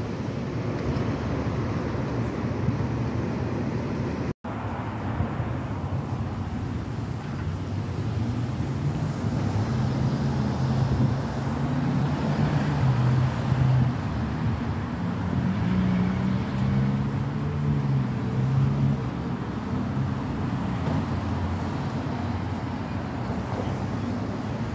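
Street traffic: cars driving through an intersection, with a low engine drone through the middle stretch. The sound drops out briefly about four seconds in.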